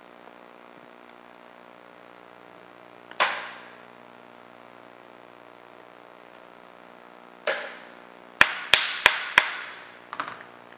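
Sharp metal clinks from hand-tool work with an Allen wrench on the end-cap screws of an X-ray tube head: one clink about three seconds in, another at about seven and a half seconds, then four quick clicks near the end, each ringing briefly.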